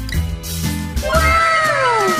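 Upbeat background music with a steady beat, joined about a second in by a cartoon cat meow sound effect: a long meow that slides down in pitch, trailed by overlapping echoes.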